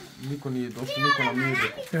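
Only speech: voices answering "no, no, no", with a child's high voice about halfway through.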